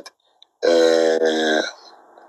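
A person's low, drawn-out vocal sound, held at one steady pitch for about a second, starting a little over half a second in.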